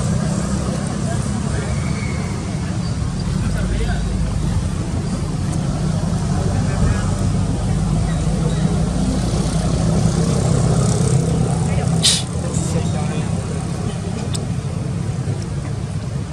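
A steady low motor hum, like a vehicle engine running, with people's voices in the background and a sharp click about twelve seconds in.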